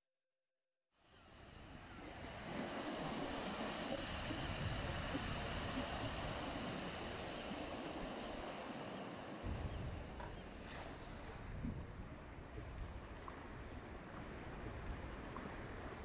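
Surf washing onto a sandy beach, with wind buffeting the microphone in low gusts; it fades in about a second in.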